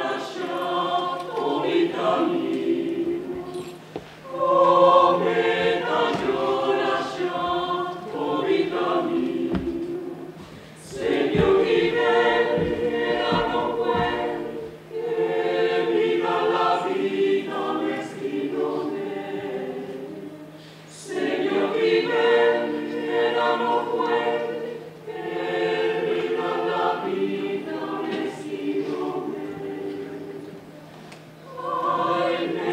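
Mixed choir of men's and women's voices singing a cappella under a conductor, in phrases separated by short pauses for breath.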